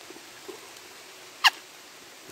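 Steady hiss of rain falling through woodland, broken about one and a half seconds in by one short, sharp squeak that falls in pitch.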